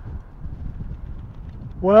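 Low wind rumble buffeting the microphone. Near the end a man starts to speak with a drawn-out "well".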